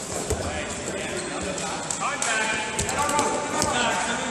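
Wrestlers' feet and bodies thudding on the mat as they grapple into a takedown, several short knocks. Voices call out from about two seconds in, sounding through a large hall.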